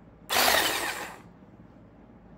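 Handheld battery milk frother switched on once for about a second, its wire whisk whirring through a thick crumbly mix in a glass bowl before it stops.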